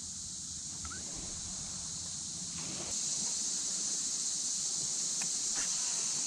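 Steady high-pitched chorus of insects in the marsh grass, a continuous even buzz that gets louder about three seconds in.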